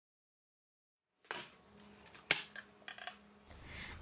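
A glass jar of home-preserved tomato sauce handled over a ceramic plate after a second of silence: faint light clicks and one sharp glassy clink about halfway through.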